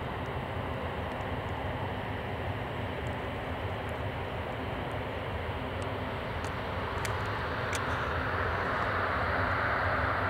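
Douglas DC-8-72's four CFM56 turbofan engines at takeoff power as the jet accelerates down the runway. The engines run with a steady rush that grows louder, with a rising hiss building over the last few seconds.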